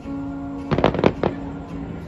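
Fireworks bursting: a rapid cluster of four or five bangs about three-quarters of a second in, over music holding a steady note.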